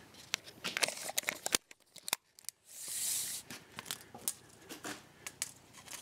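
A steel tape measure being handled among metal parts: scattered clicks and taps, with a short rasping hiss about three seconds in.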